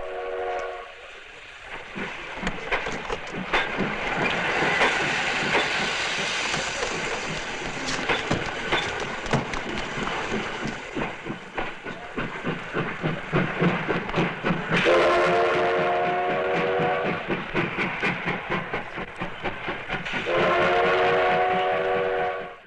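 Steam train getting under way: a rhythmic clatter of strokes that comes quicker and denser through the middle, with a chord whistle sounding for about two seconds about two-thirds of the way through and again near the end.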